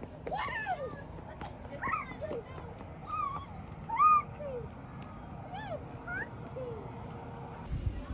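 Domestic cat meowing repeatedly: about eight short meows, each rising and falling in pitch, with the loudest about four seconds in.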